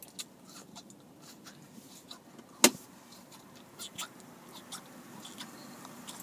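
A single sharp knock about two and a half seconds in, heard from inside a car, among scattered faint clicks over a low background hum.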